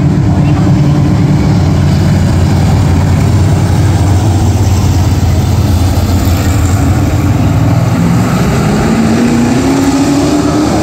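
Stock car engines running at a steady, loud drone; near the end the pitch rises as the cars accelerate.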